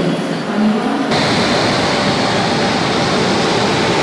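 Moving train's steady rushing noise, which gets louder and brighter about a second in.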